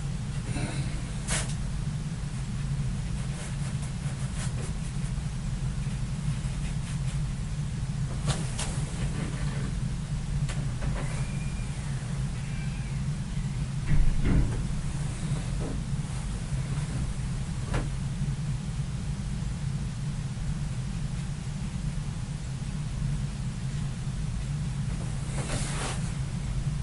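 A steady low background hum, with a few faint scattered ticks and one brief, louder knock about fourteen seconds in.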